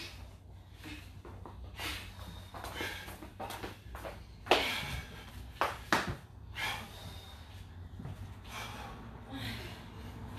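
People breathing hard during push-ups: several sharp, noisy exhales, the loudest about halfway through, over a steady low hum.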